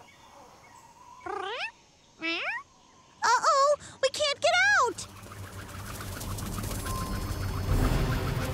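Short wordless exclamations from cartoon characters, several rising in pitch like puzzled "huh?"s. From about five seconds in, a cartoon helicopter approaches: its steady rotor and engine noise grows louder to the end.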